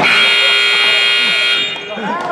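Gym scoreboard buzzer sounding one steady, loud blast of about a second and a half, then cutting off.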